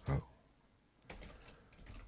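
Computer keyboard typing: a short run of keystrokes about a second in.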